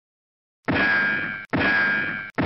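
Two loud metallic clang sound effects, the first about two-thirds of a second in and the second under a second later, each ringing with a bright metallic tone and fading before it is cut short.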